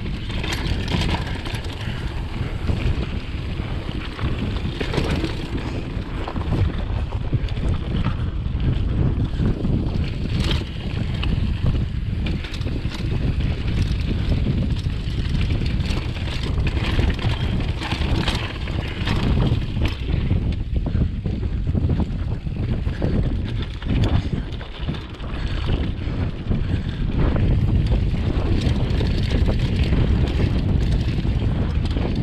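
Mountain bike ridden fast over rough dirt singletrack: a steady rumble of tyres and wind buffeting the camera microphone, with frequent knocks and rattles as the bike hits bumps and rocks. The noise eases briefly about five seconds before the end.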